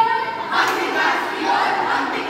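A group of young performers' voices shouting together in unison, taking over from a single voice about half a second in.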